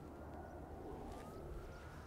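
Faint outdoor background noise on an open driving range, with a faint high thin tone that drifts slightly in pitch.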